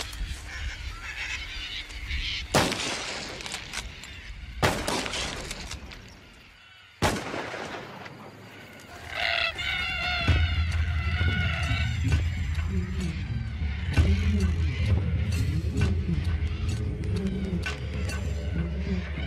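Three rifle shots about two seconds apart, each with a trailing echo, fired to scare off crop-raiding cockatoos. They are followed by a flock of cockatoos calling as it flies off, and background music comes in about ten seconds in.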